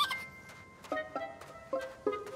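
Background music: a few sparse, soft plucked-string notes, each starting sharply and ringing briefly.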